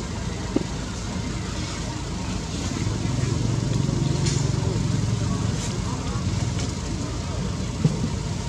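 Indistinct voices over a steady low rumble, which grows a little louder for a few seconds midway, with a couple of brief clicks.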